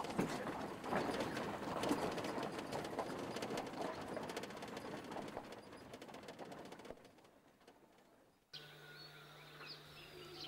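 Vehicle tyres rolling over a loose crushed-stone road, a crackling gravel noise that fades away over about seven seconds and stops. Near the end, faint bird chirps over a steady low hum.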